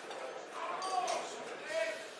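Faint, indistinct voices talking in a large hall, with no music playing.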